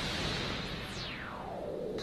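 Synthesized broadcast sting: a swelling whoosh of noise with a tone that sweeps steadily down from high to low in the second half. It marks the item selling out and the price locking.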